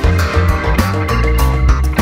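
Rock music with a steady drum beat, heavy bass and electric guitar.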